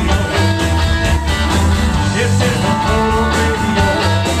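Live rock and roll band playing: electric guitars, bass guitar and drum kit at a steady, loud level.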